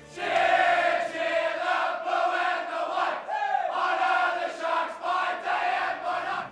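A team of footballers singing their club song together in a loud, unison chant with held notes: the victory song after a win.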